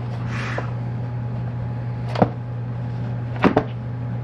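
Cardboard carton being jostled as a cat squirms inside it: a soft rustle near the start, then sharp knocks, one about two seconds in and two close together near the end.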